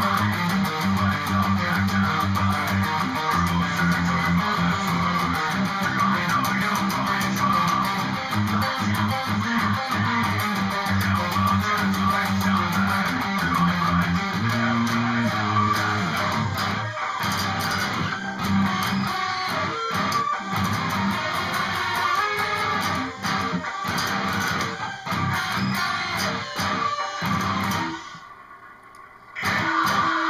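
Electric guitar playing the riffs of a metalcore song. The sound drops away briefly near the end, then the playing comes back in.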